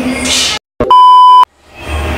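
A single loud electronic bleep, a steady pure tone lasting a little over half a second and cut in abruptly between two spots of dead silence, like an edited-in censor bleep. A voice trails off just before it.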